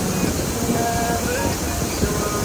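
Wake-surf towboat running under way: steady engine rumble mixed with the rush of the churning wake and wind on the microphone.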